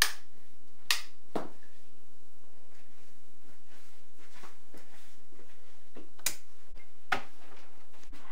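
A few sharp, separate clicks over a quiet kitchen background: three close together at the start and two more near the end.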